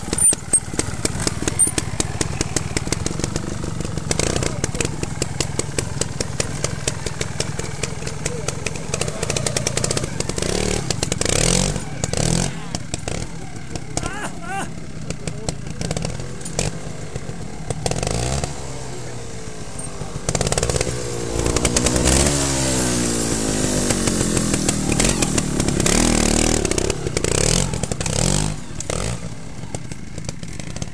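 Beta trials motorcycle engine running and being blipped, its revs rising and falling repeatedly as the bike works through the section.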